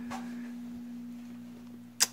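A steady low hum held on one pitch, with a single sharp click at the very end.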